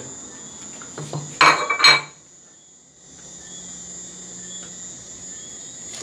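A ceramic plate knocking and clinking against the rim of a steel stockpot a few times, about one to two seconds in, as ginger and spices are tipped into the water. A steady high-pitched whine runs underneath.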